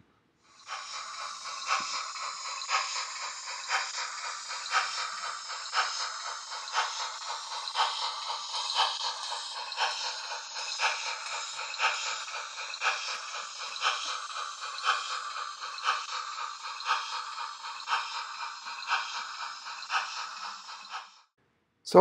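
Gn15 model train running along its track: a steady, thin rattling whir with a sharper click roughly once a second.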